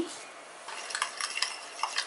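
A steel spoon stirring whole seeds in water in a glass bowl, clinking and scraping against the glass. It starts a little under a second in.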